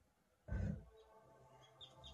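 A film soundtrack coming back through the home-theatre speakers about half a second in: quiet music with sustained notes, and a few short bird chirps over it.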